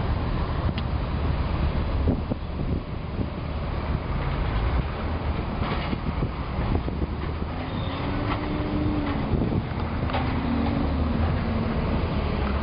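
Steady outdoor noise of wind on the microphone mixed with distant road traffic from the street below. A faint wavering hum comes in about two-thirds of the way through.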